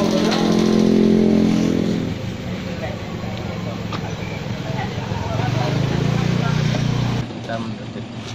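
A motorcycle engine running close by, its pitch dropping about two seconds in and rising again a few seconds later, with faint voices over it; it cuts off abruptly near the end.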